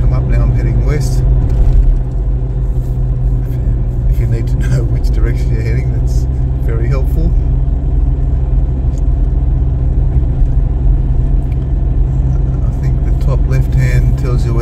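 Steady low rumble of engine and road noise inside a Toyota Fortuner's cabin while it drives along.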